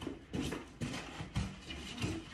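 A few short, soft knocks and rubbing scuffs of movement close by, with a woman saying 'leave' near the start.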